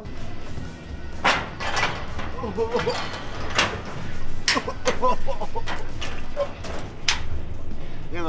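A handful of sharp knocks and clacks as people clamber out of a Ferris wheel gondola onto the platform, over a steady low hum, with a few brief bits of voice.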